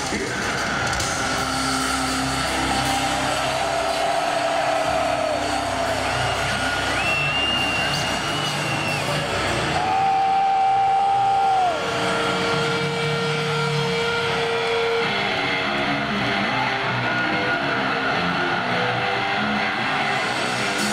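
Arena concert crowd noise between songs: a steady roar with long held shouts and whistles that slide in pitch at their ends, over sustained low droning tones from the stage PA, with no drum beat.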